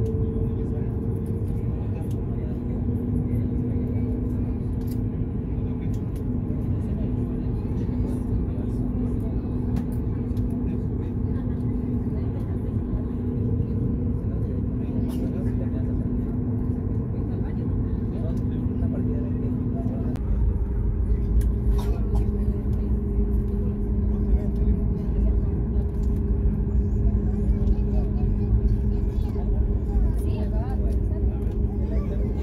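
Cabin noise of a Boeing 737 MAX 8 taxiing: a steady engine rumble with a constant hum. About twenty seconds in, the hum drops slightly in pitch and the low rumble grows louder.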